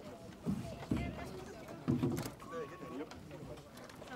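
Indistinct chatter of several people, with a few dull low thumps about half a second, one second and two seconds in.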